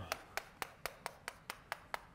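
Chalk tapping on a blackboard in a quick, even series of sharp taps, about four a second.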